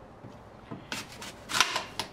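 Kitchen knife slicing down through a Granny Smith apple wedge: short crisp crunching cuts about a second in and again near the end.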